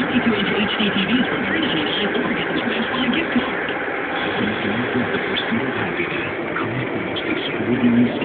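Steady road and engine noise inside a car driving on the freeway, with a voice faintly underneath.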